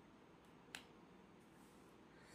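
Near silence: room tone, broken once by a single short, sharp click a little under a second in.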